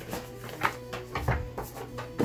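A boxed deck of tarot cards being handled and set down on a table: a few light taps and scrapes of card and cardboard, over faint background music.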